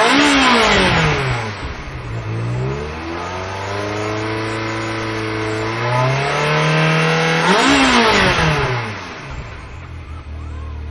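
Ferrari V8 sports-car engine revved hard twice: each time the pitch climbs, holds high for a few seconds, then falls away as the throttle is released. It is loudest at the top of each rev, near the start and again about three quarters of the way through.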